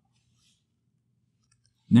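Near silence: room tone with a faint low hum, until speech starts at the very end.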